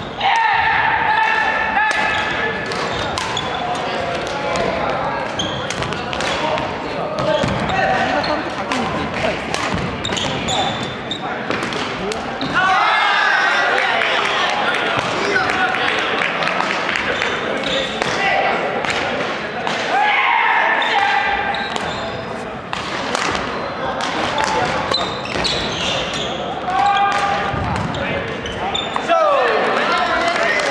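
Badminton rackets striking a shuttlecock again and again in a rally, sharp hits ringing in a large wooden-floored gym hall.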